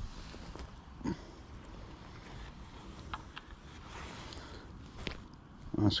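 Quiet handling noise as a small fish is swung in on a fishing pole and taken in hand: a low steady background with a few faint knocks and rustles, one about a second in, two around the middle and one near the end.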